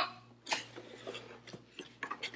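Cardboard box lid being pulled open by hand: one sharp click about half a second in, then faint rustling and small ticks of the flap.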